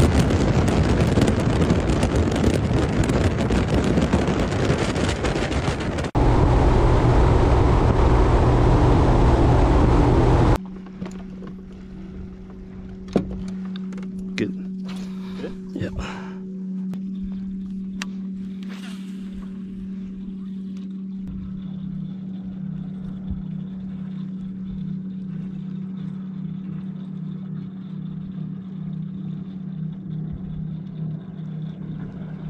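A bass boat running fast across the lake: engine and heavy wind noise on the microphone for about ten seconds, with an edit cut at about six seconds. It then cuts to the boat at rest, with a quieter steady low hum and a few sharp clicks.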